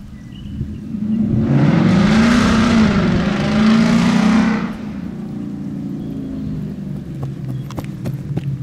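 A motor vehicle driving past: engine and road noise swell for about four seconds, then drop suddenly to a steady, quieter engine hum.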